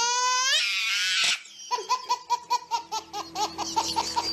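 A baby laughing: a long, high-pitched squeal of laughter in the first second or so, then a quick run of short giggles.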